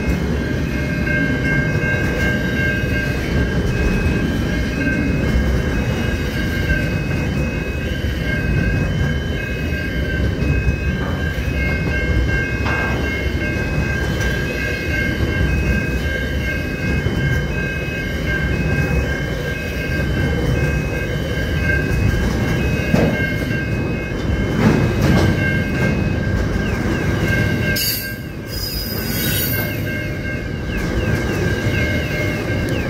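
Long intermodal container freight train rolling past at speed, its wagon wheels rumbling and clattering on the rails. Steady high-pitched ringing tones run over the rumble, and there is a brief high hiss near the end.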